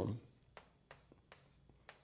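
Faint taps and strokes of writing on a board, about five short ticks spread over a second and a half.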